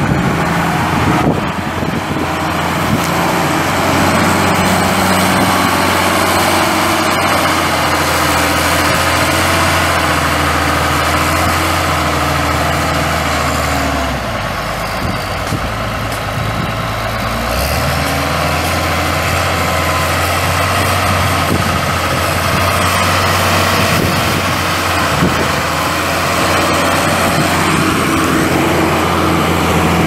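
1996 Komatsu WA180 wheel loader's Cummins 5.9L six-cylinder turbo diesel running steadily with a deep hum. About halfway through, the engine note drops lower and a little quieter for a few seconds, then comes back up.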